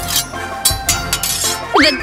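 Background music with a few sharp metallic clinks in the first second, like blades clashing in a sword fight.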